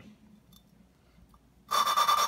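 Valve face being lapped against its seat in a 1958 Alfa Romeo 1300cc cylinder head with about 200-grit grinding compound: a faint pause, then near the end a loud, gritty rasping starts as the lapping stick spins the valve back and forth. The sound is very coarse, a sign that the two faces are still being ground in and not yet mated.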